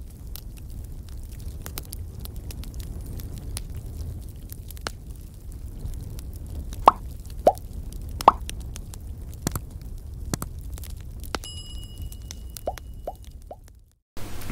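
Animated-logo intro sound effects: a steady low rumble scattered with clicks, a few quick falling pops, and a bright ringing chime a little before the end, then a sudden cutoff.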